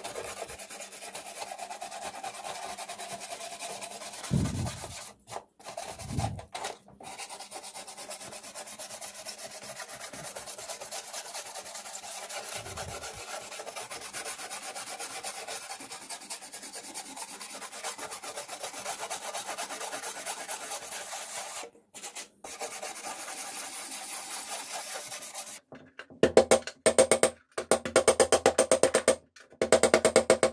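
Metal scraper rasping wet, softened paint off the sheet-metal panel of a 1940s toy piano, with two dull knocks about four and six seconds in. Near the end, rapid hammer strikes on sheet metal against a bench vise, knocking out dents.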